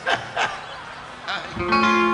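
A guitar chord strummed once near the end and left ringing. Before it there are a few brief voice sounds.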